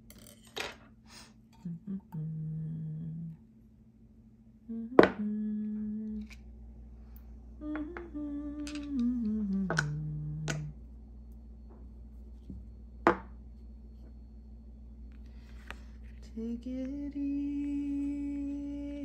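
A person humming a slow, wordless tune in long held low notes that step and slide between pitches. Two sharp clicks of stones knocking together as they are moved come about five seconds in and again about thirteen seconds in.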